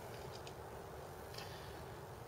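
A few faint, light metallic clicks as a hex key works a cap screw at the corner of aluminium extrusion rails, over quiet room hiss.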